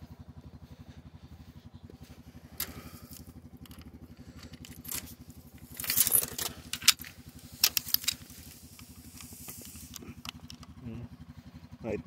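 Side-by-side utility vehicle engine idling steadily with a fast low pulse, while sharp metallic clicks and rattles come in a cluster between about three and eight seconds in.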